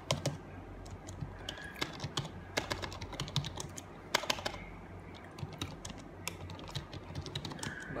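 Computer keyboard being typed on: irregular runs of key clicks with short pauses between them, as a file name is entered.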